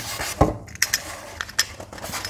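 A few sharp clicks and a knock from a plastic utility knife and a block of polystyrene foam being handled on a table, just before the foam is cut; the knock comes about half a second in.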